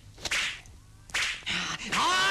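Two sharp swishing whooshes of martial-arts film sound effects for swinging arms and a flying kick: one about a quarter second in and a louder one just after a second in.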